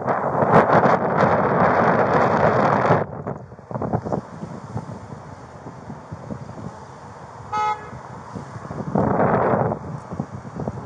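Loud rushing noise on a body-worn camera's microphone for about the first three seconds, then a single short car horn honk about three-quarters of the way through, followed by another brief rush of noise near the end.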